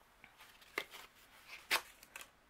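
Sheet of white cardstock being handled and slid onto a work surface: faint paper rustling with two short, sharp paper taps, one a little under a second in and one near the end.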